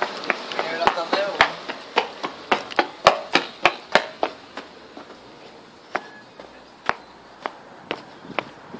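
Quick footsteps, about three a second, thinning out to occasional steps about halfway through, with a voice briefly near the start.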